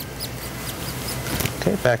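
Gloved hands handling a catheter wire against a plastic drape: a few light, irregular clicks and rubbing over a steady low hum of room equipment.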